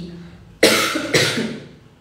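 A woman coughs twice, into her hand: two short, sharp coughs about half a second apart, the first about half a second in.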